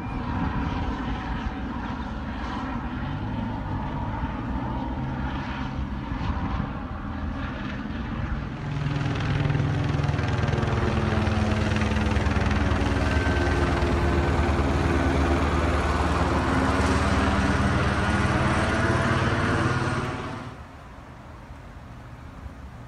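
Helicopter flying overhead, its rotor and engine sound growing louder about eight seconds in as it passes close. The sound stops suddenly near the end.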